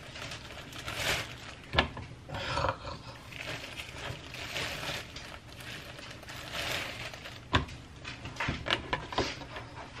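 Plastic bread bag crinkling and rustling as slices of bread are pulled out by a gloved hand, in uneven bursts, with a few sharp clicks and taps.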